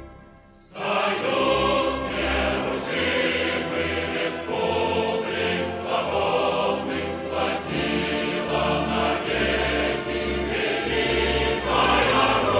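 Choral music with a full, sustained sound, starting about a second in after a brief dip.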